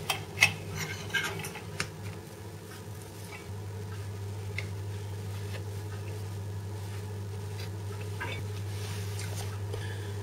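Light clicks and taps of a plastic pastry syringe being handled and filled with spreadable cheese, mostly in the first two seconds with a few more later. Under them runs a steady low hum that grows a little louder about three and a half seconds in.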